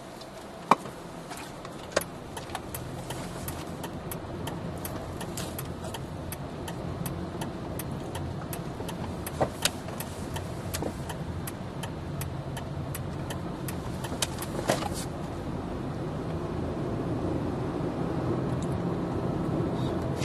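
Car interior road and engine noise as the car pulls away from a stop and picks up speed, the noise rising slowly. Scattered sharp clicks and rattles sound throughout, the loudest about a second in, at two seconds, and twice more later.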